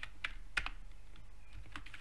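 Computer keyboard typing: irregular key clicks, a cluster near the start and another near the end with a short pause between.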